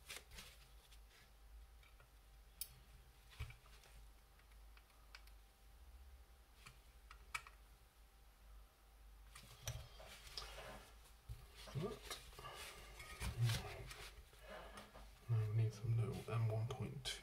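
Small clicks and taps of tiny screws and a precision screwdriver against a plastic model panel, with parts and bags being handled. The handling gets busier about halfway through, and a voice talks quietly near the end.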